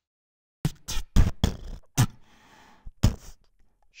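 Percussion clip played back from a Pro Tools session. Sharp, irregularly spaced drum-like hits mix deep thuds with brighter snaps, starting just under a second in.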